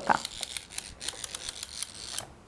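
Winding the plastic Cranky crane toy from Fisher-Price's Cranky's Spinning Cargo Drop set: its wind-up mechanism gives a quick run of small plastic clicks as the crane's top is turned by hand.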